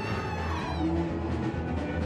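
Twarab band music with a steady bass line, a high held note sliding downward at the start.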